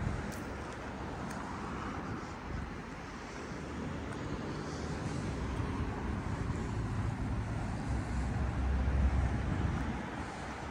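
Steady road traffic noise with a low rumble, swelling as a vehicle passes near the end.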